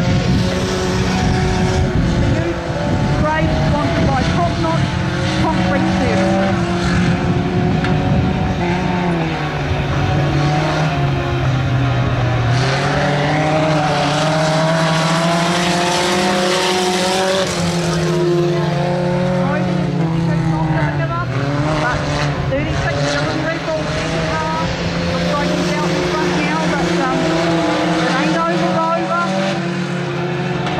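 Engines of saloon race cars running hard around a dirt speedway oval, the engine note rising and falling repeatedly as they power on and lift off.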